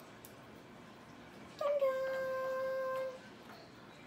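A single high, steady whine-like voice note held for about a second and a half, starting about halfway in with a short drop in pitch.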